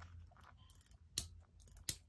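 Two short sharp clicks, one about a second in and one near the end, over faint handling noise: a metal snap-hook clip on a stick bag's fabric strap being handled.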